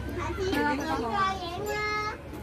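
A child's high-pitched voice calling out, its pitch bending up and down, then holding one long note near the end, over steady low background noise.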